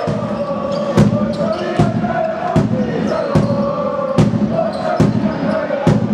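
Fans' drum beaten at a steady pace, about one hit every 0.8 seconds, under a sustained chant from the crowd in a sports hall.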